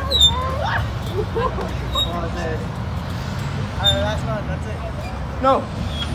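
Faint voices over a steady low outdoor rumble.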